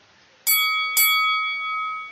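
A bell-chime sound effect from a subscribe-button animation strikes twice, about half a second apart, each ring fading away over the following second.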